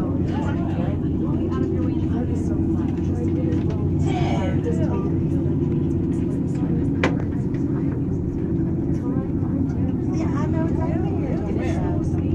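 Steady low hum and rumble inside an aerial tramway cabin as it travels, with passengers' voices talking faintly over it and one sharp click about seven seconds in.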